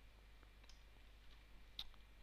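Near silence with a faint low hum, broken by two or three faint, sharp clicks of a computer mouse; the clearest click comes near the end.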